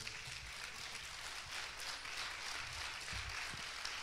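Congregation applauding, a steady patter of many hands clapping.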